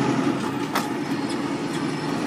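Semi truck's diesel engine running steadily, heard from inside the cab as a low drone. One brief click sounds about three-quarters of a second in.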